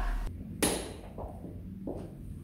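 A single sharp knock with a brief ringing tail about half a second in, then faint low thuds and shuffling: a chair at a conference table being pulled out and sat in.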